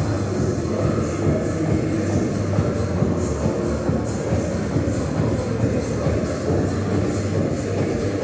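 90s dance music playing loud through a Sony SRS-XB43 portable Bluetooth speaker with the bass turned up full, heard across a large empty hall with heavy echo. The music has a steady beat and a booming low end.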